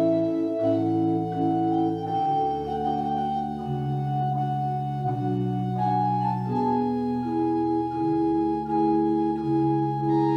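Church organ playing slow, sustained chords that change every second or so, with a deep pedal bass line coming in about two seconds in.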